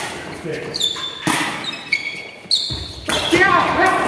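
Sharp kicks of a sepak takraw ball during a rally, with short high shoe squeaks on the hall floor and a player's shout near the end, all echoing in a large sports hall.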